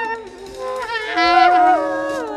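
Free-improvised jazz from a small group of horns and wordless voice: several pitched lines slide and bend downward against each other. A loud, wavering held note is drawn out near the middle.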